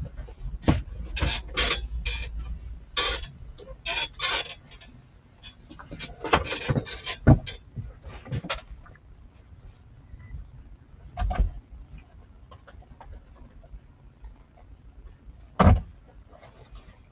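Irregular clicks, knocks and rustles of hands working at a desk, thickest in the first few seconds, with a single sharper knock near the end.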